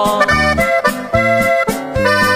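Norteño corrido music, instrumental: an accordion plays a quick run of melody notes over a steady bass beat.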